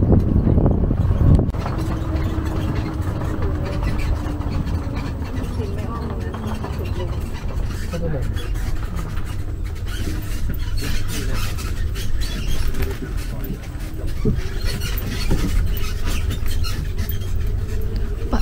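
Open-sided tour tram moving along a farm track: a steady low rumble, with a faint whine that drifts slightly lower over the first few seconds and light rattling later on.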